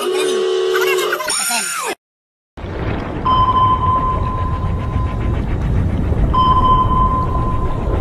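Music and a voice that cut off abruptly, then, after a short gap, a low rumbling noise with a steady high electronic beep held about two seconds, sounding twice: a sound effect laid over a radar-screen animation.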